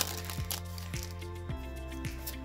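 Background music with a steady beat, about two beats a second, over held bass notes that change about one and a half seconds in.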